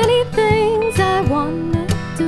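Music: an acoustic song with acoustic guitar and a melody line that glides and wavers in pitch.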